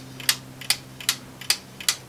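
3D-printed plastic replica of a Roskopf watch ticking: its escapement clicks evenly, about two and a half times a second, over a faint low steady hum.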